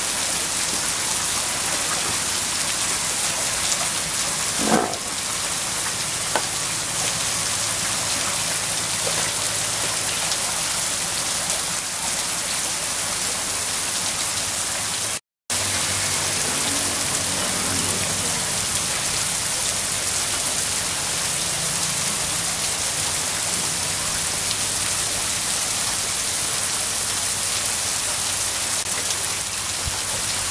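Water spraying down from overhead sprinkler pipes onto a pen of buffaloes and splashing on their backs and the floor: a steady, rain-like hiss, broken once by a brief dropout about halfway.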